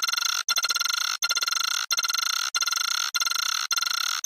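Nokia startup jingle, sped up and heavily distorted into a harsh buzzing tone. It restarts over and over, about every 0.6 s, with a brief cut between repeats.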